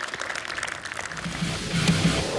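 Audience applause merging into rising outro music; a low, pulsing bass line comes in about a second in and the music grows louder.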